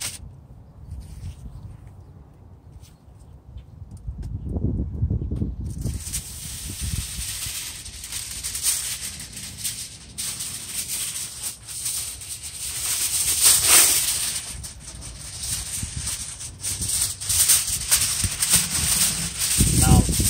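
Aluminium tin foil rustling and crinkling as it is pulled out and spread by hand, starting about six seconds in and going on in loud spells; before that only a low rumble.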